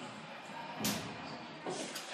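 A single sharp knock about a second in, over steady room noise.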